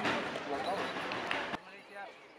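Faint voices of people talking, with a single sharp click about one and a half seconds in, after which it goes quieter.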